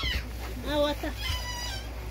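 A woman's voice making drawn-out exclamations rather than words: a quavering cry about a second in, then a high, held note.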